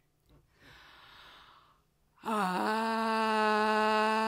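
A woman's audible breath, then a long, loud, open-mouthed sung tone that starts a little over two seconds in, dips briefly in pitch and then holds one steady note.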